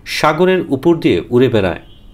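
Voice-over narration: a voice speaking in Bengali.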